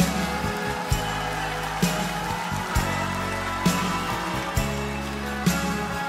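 Live band playing a slow instrumental passage with a steady drum beat a little under one per second, sustained bass notes and electric guitars, with a pedal steel guitar in the line-up.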